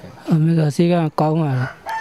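Speech only: a man talking in short phrases, with no other sound standing out.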